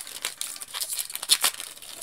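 Foil Pokémon TCG booster-pack wrapper crinkling and rustling in the hands as the pack is opened and the cards are slid out, an irregular run of crackles with one sharper crackle just past the middle.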